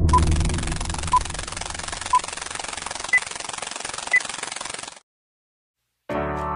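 Five short electronic beeps one second apart over a steady hiss, three at a lower pitch and then two higher, like a countdown. A low rumble fades out at the start, and the hiss cuts off suddenly about five seconds in.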